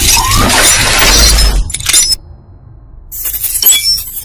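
Sound effects of an animated video intro. Dense crashing, shattering noise over a deep bass rumble cuts off after two sharp hits about two seconds in. After a short lull, a bright shattering burst comes near the end.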